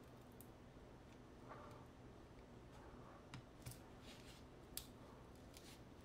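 Near silence, with a few faint clicks and scrapes of a plastic pry tool working under the front cover of a Polaroid Cube camera.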